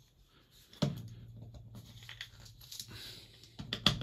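Faint handling noise: light rustling and scraping, with a few sharp clicks near the end. Under it runs a low steady hum that starts about a second in.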